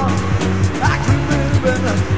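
Rock band playing: a steady drum beat and a busy bass line, with short sliding lead notes over the top.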